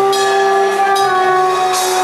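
Live pagode band holding one long sustained chord, carried by the keyboard, with a couple of short cymbal or percussion hits over it.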